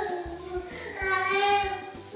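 A young child singing in drawn-out, wavering notes, with a faint steady beat underneath.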